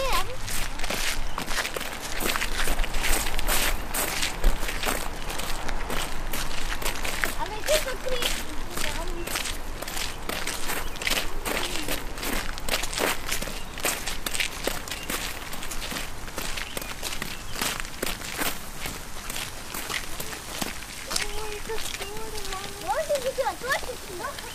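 Footsteps of someone walking, a steady run of short scuffing steps, with brief snatches of voices now and then.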